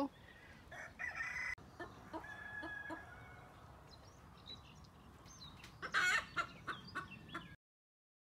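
Chickens clucking and calling faintly, with a louder call about six seconds in. The sound cuts off shortly before the end.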